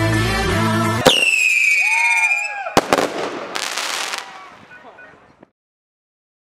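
Music cuts off abruptly about a second in. Fireworks follow: a loud whistle falling in pitch, a few sharp pops, then a burst that fades out to silence.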